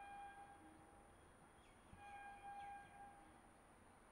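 Two faint, distant train horn blasts, each about a second long at one steady pitch, the second starting about two seconds in.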